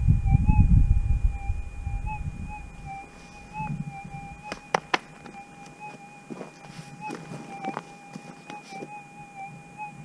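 Gold-prospecting metal detector's steady threshold tone, a thin hum with slight wobbles in pitch. A low rumble in the first second or so and a couple of sharp clicks about halfway.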